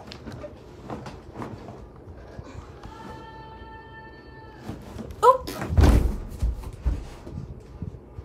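A short cry of "Oh!" followed at once by a heavy thump and a few lighter knocks: a person landing hard in a room, as in a fall.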